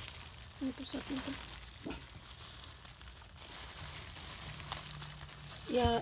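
Thin disposable plastic gloves crinkling and rustling as gloved hands handle a wet newborn puppy: a continuous fine crackling hiss.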